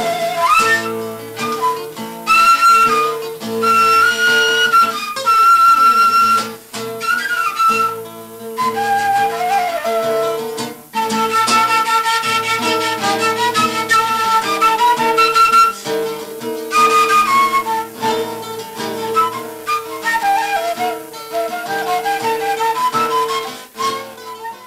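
Bulgarian kaval, an end-blown wooden flute, plays an ornamented melody with sliding notes over acoustic guitar accompaniment.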